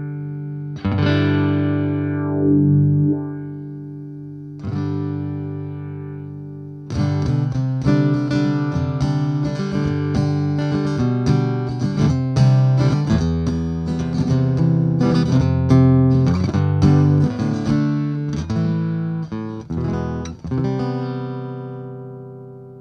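Ovation 1771 Balladeer acoustic-electric guitar played through a Radial PZ-PRE acoustic preamp into a BOSS Katana amp. A few single chords are struck and left to ring in the first seven seconds. Then comes a run of busier strummed and picked playing that rings out near the end.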